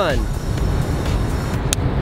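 Steady outdoor city noise, a low rumble of traffic and wind, with one short high tick near the end.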